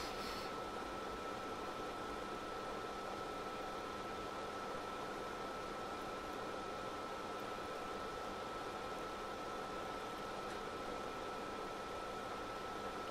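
Steady background hiss with a faint thin steady tone running through it; no other sound.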